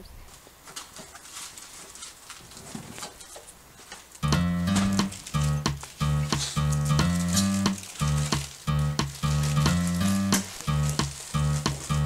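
Quiet outdoor hiss with faint scattered ticks. About four seconds in, background music with a steady beat and a repeating bass line starts.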